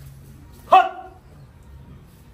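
A man's single sharp, bark-like shout about three quarters of a second in, falling slightly in pitch: a spirit medium's cry as he goes into trance.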